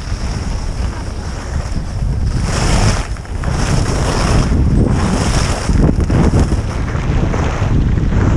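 Wind buffeting a helmet-mounted GoPro microphone as a skier runs downhill, a loud steady rumble. From about two and a half seconds in, the skis scrape and hiss on hard, crusty snow three times, about a second apart, as the skier turns.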